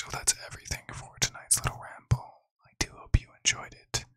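Soft whispering close into a microphone, broken by several sharp clicks.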